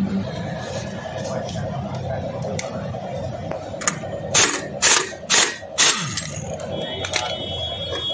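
Pneumatic impact wrench hammering in four short bursts about half a second apart in the middle, loosening the clutch nut on a scooter's CVT so the clutch can be removed.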